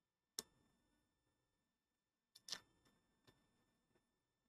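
Sharp metallic clicks of a metal shield cover being prised off an iPhone 7 logic board: one click about half a second in, then a quick cluster of clicks around two and a half seconds in, followed by a couple of lighter ticks.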